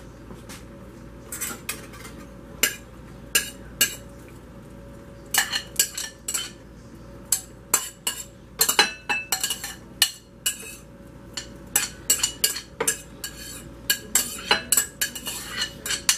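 Metal spoon scraping and knocking against a ceramic bowl as chopped onion is scraped out of it: a run of irregular clinks and scrapes.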